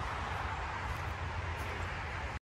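Steady wind noise on the microphone, a rushing hiss over a fluctuating low rumble, with no distinct strokes or events.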